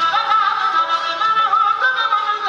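Live qawwali-style music: a male lead voice sings an ornamented, wavering melodic line over sustained harmonium tones.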